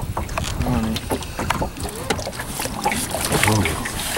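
Low voices and short exclamations on a small boat, over a constant low wind rumble and water noise, with scattered knocks and clicks.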